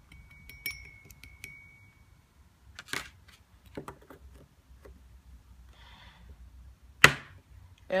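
A small metal measuring spoon taps a few times against a porcelain evaporating dish, each tap ringing briefly with a clear high tone. Then come a few scattered small knocks, and near the end one sharp, loud click.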